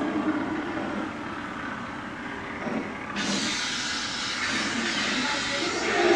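Electronic Star Wars sound effects from costume props: a low steady hum, joined suddenly about halfway through by a loud steady hiss.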